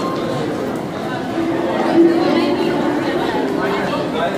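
People chattering, with a few single harp notes plucked on the strings by a child, the clearest about two seconds in.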